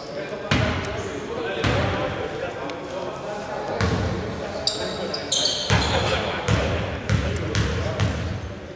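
A basketball bouncing on a hardwood court: about seven irregular bounces, with a few sneaker squeaks on the floor about halfway through, echoing in a large, nearly empty indoor arena.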